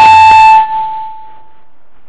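Loud, steady high-pitched howl of microphone feedback through a lecture hall's PA system. It is strongest for the first half second, then thins to a single tone that dies away about a second and a half in.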